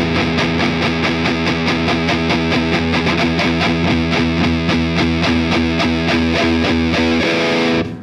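Electric guitar through a Diezel VH Micro head with the gain and deep (low-end) control turned up: a fast, evenly picked, heavily distorted riff on low notes. It stops abruptly near the end.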